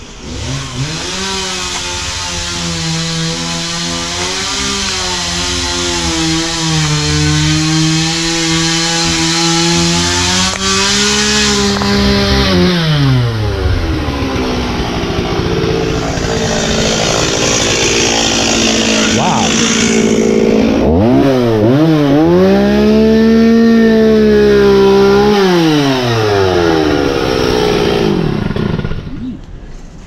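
Two-stroke chainsaw held at high revs, its pitch wavering, easing down to idle about halfway through. It is then revved up again for a few seconds and let down once more before cutting off near the end.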